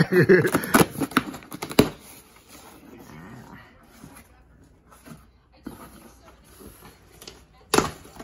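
Cardboard shipping box being torn open by hand. There are sharp rips and crackles in the first two seconds, then quieter rustling and scraping of cardboard, and one loud crack near the end.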